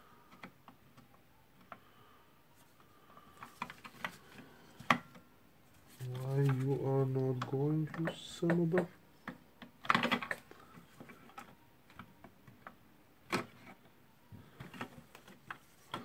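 Irregular small clicks and taps of plastic parts and wire connectors being handled and pushed into a cordless circular saw's plastic motor housing. The sharpest click comes about five seconds in.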